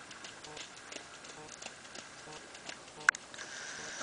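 A colt's hooves striking soft turf as he runs loose, heard as faint, irregular ticks, with one sharp click about three seconds in.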